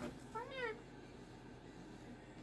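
Moluccan cockatoo giving a single short call about half a second in, rising and then falling in pitch.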